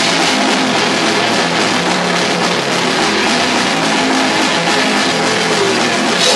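Metal band playing live: distorted electric guitars over a drum kit, loud and unbroken.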